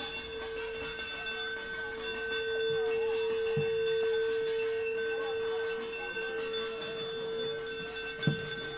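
A ritual bell or similar metal instrument ringing continuously, a steady metallic tone with many high overtones that does not die away.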